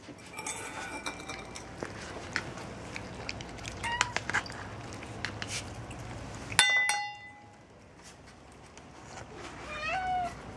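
House cats meowing at feeding time, a call about four seconds in and another near the end, over scattered small clicks and knocks of food bowls. About two-thirds through comes a sharp clink that rings briefly.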